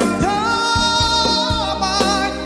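Khmer pop song: a singer holds one long note over a band with a steady beat.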